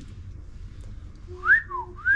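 A person whistling briefly about one and a half seconds in: a quick upward slide followed by a short falling note.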